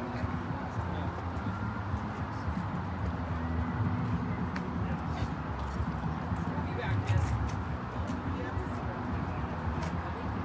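Indistinct background voices of people talking nearby over a steady low outdoor rumble, with a few faint clicks; no engine is running.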